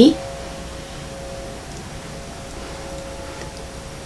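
A tuning fork from a DNA nucleotide set, tuned near C# at about 540–550 Hz, ringing with a steady pure tone that fades slowly, with fainter higher tones above it.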